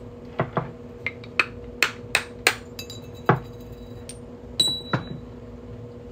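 Hammer striking a center hole punch to punch the centre hole out of a state quarter on a steel bench block: about ten sharp metallic blows at an uneven pace, one near the end leaving a brief high ring.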